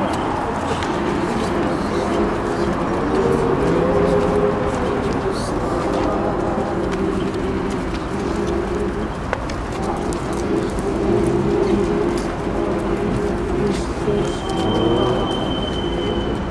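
A crowd singing a slow chant together, the voices holding long notes, with people talking nearby.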